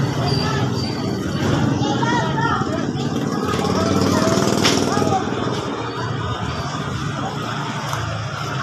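Indistinct talking over a steady low engine hum, with one sharp click about halfway through.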